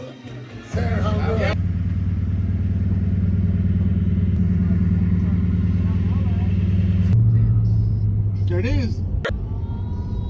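A vehicle's engine running with a loud, steady low drone that changes slightly about two-thirds of the way through, as heard from inside or beside the vehicle. A voice is heard briefly near the end.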